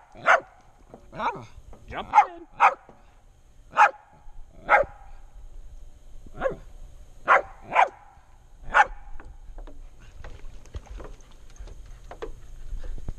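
West Highland White Terrier barking, about ten sharp single barks at uneven intervals, stopping about nine seconds in.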